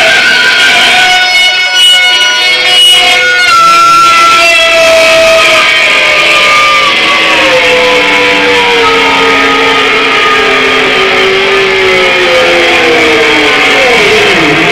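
Live rock band music led by a sustained electric guitar solo on a Sky Guitar. The notes are held long, and the line slides slowly down in pitch through the second half.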